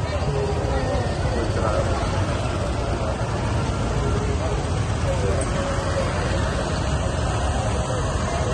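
Many small motorbike engines running at walking pace close by, mixed with the chatter of a large crowd on foot.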